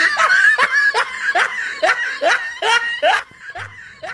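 Laughter: a run of short, evenly spaced "ha" pulses, each falling in pitch, about two or three a second, fading after about three seconds.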